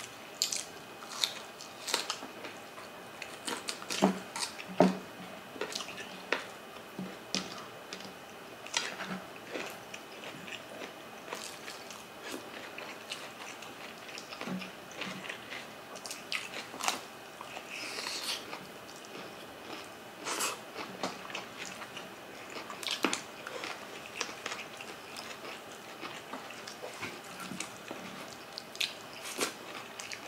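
Close-miked chewing and mouth smacking of two people eating by hand, with many sharp, wet clicks at irregular intervals.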